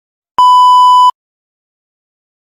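A single loud electronic beep: one steady, even tone lasting a little under a second, switching on and off abruptly.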